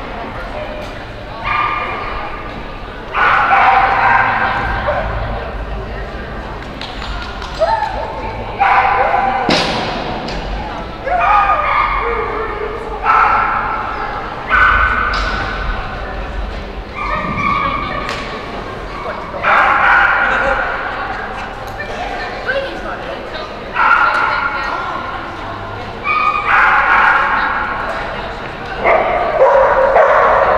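A dog barking again and again, about every one to two seconds, each bark ringing on in a large echoing hall.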